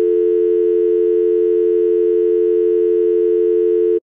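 Loud steady electronic tone of two low notes held together, like a telephone dial tone, laid over a test card; it cuts off suddenly at the end.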